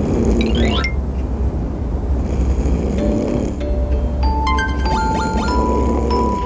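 Edited-in sleep sound effect of deep, slow snoring breaths that swell about every two and a half seconds, over background music with a steady deep bass and chiming notes in the second half.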